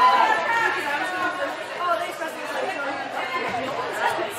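Many overlapping voices of spectators and players chattering and calling out across an indoor arena, loudest at the start and easing off.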